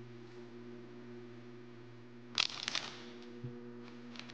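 A steady low background hum, with a brief cluster of sharp rustling clicks about two and a half seconds in and a soft thump shortly after.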